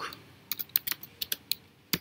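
Computer keyboard typing: a quick, uneven run of about ten keystrokes, starting about half a second in.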